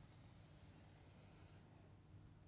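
Felt-tip whiteboard marker drawing a long curved stroke across a whiteboard, a faint, high-pitched scratching that breaks off shortly before the end.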